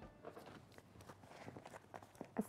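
Near silence: studio room tone with a few faint ticks.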